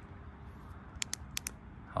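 A flashlight's switch clicked four times in quick succession about a second in, changing the Weltool T13G from its low output to high.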